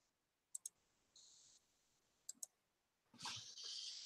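Near silence broken by faint clicks: a pair about half a second in and another pair just after two seconds.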